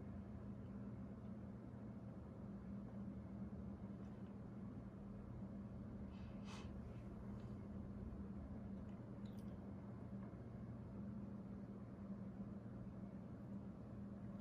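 Quiet room tone: a steady low hum, with a couple of faint brief noises around the middle.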